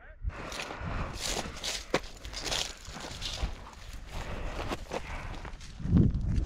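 Footsteps crunching and rustling through dry brush and rocky ground, with a sharp snap about two seconds in and a heavier thump near the end.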